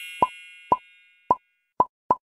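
Four short cartoon 'plop' sound effects, spaced unevenly and coming closer together toward the end, over the fading ring of a bell-like chime.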